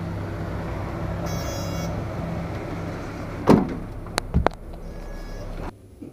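City street traffic, with a minibus engine idling close by as a steady low hum. A loud sharp knock comes about three and a half seconds in, followed by two smaller clicks. Near the end the street noise cuts off suddenly into a quiet room.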